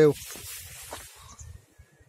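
A soft hiss that starts right after a spoken word and fades out over about a second.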